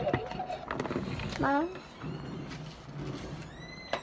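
Toy blind-bag packaging being handled and opened, with scattered crinkles and clicks. A short voice sound comes about a second and a half in, and a brief high squeak near the end.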